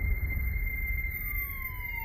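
Electronic sci-fi film sound design: a steady high tone over a low rumble, joined about a second in by a tone that slides slowly downward, with a siren-like quality.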